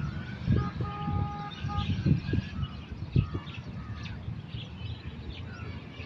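Outdoor ambience of birds chirping in short calls, with a held whistle about a second in. Under it runs a low, uneven rumble with a few louder bumps.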